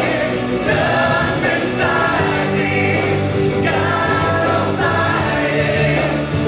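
Live contemporary worship band playing and singing: several voices in held, sustained phrases over acoustic guitar, electric guitar, drums and keyboard.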